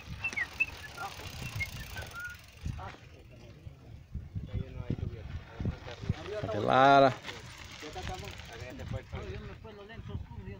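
Mountain bikes rolling down a loose dirt and rock trail, tyres on the gravel with uneven knocks and rattles as riders pass close. About seven seconds in, a loud drawn-out shout from one person stands out above it, with other voices calling around it.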